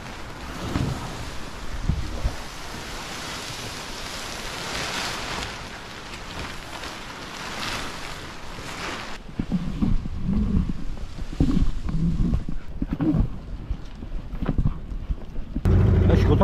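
Wind buffeting the microphone over the rustle and flap of a nylon spinnaker's cloth as the sail is unrolled and fills. In the second half the sound turns to heavier, lower gusts of wind on the microphone.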